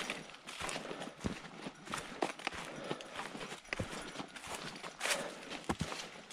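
Footsteps crunching and shuffling through dry fallen leaves, in an irregular walking pace with a steady crackle between steps.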